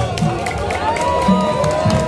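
Volleyball crowd noise: many spectators' voices shouting and cheering over one another, with one voice holding a long high call about halfway through.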